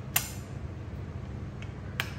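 A sharp click as the PCP hand pump with folding butterfly feet is handled, then a steady low hum, with a second, fainter click near the end.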